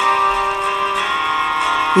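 Instrumental backing music between sung lines: a steady held chord with guitar.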